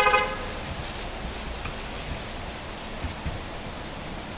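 A short car horn toot at the very start, then steady outdoor background noise with a couple of faint thumps.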